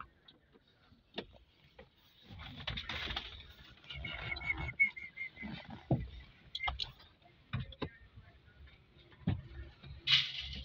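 Plastic dashboard trim parts being handled and fitted: scattered clicks and knocks, with a stretch of rustling and scraping about three seconds in.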